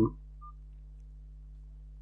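Steady low electrical hum of room tone, made of a few constant low tones, right after the end of a spoken 'um'.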